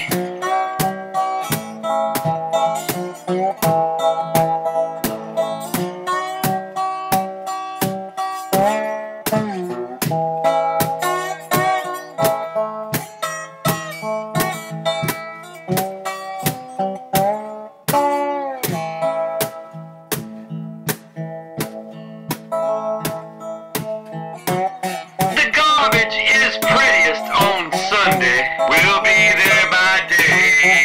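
Instrumental break in a bluesy song: a plucked acoustic guitar plays a melody over a steady beat kept on a brushed snare drum. The band gets louder and fuller about five seconds from the end.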